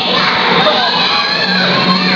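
A crowd of children shouting and cheering at once, many voices overlapping.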